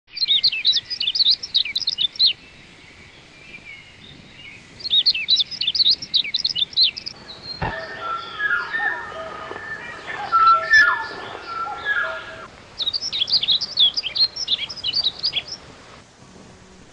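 Birds chirping in quick runs of high calls, three times over, with a different, lower set of bird calls and a sharp click in the middle stretch.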